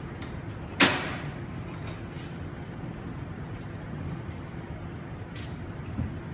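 Aluminum beach cart frame knocking once as it is moved on the table, a single sharp clank about a second in. After it only a low steady room hum, with a couple of light taps.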